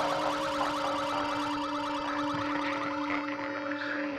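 Electronic music: a synthesizer drone held on one low note, with a fast, evenly pulsing, alarm-like warble above it. The drone cuts off at the very end.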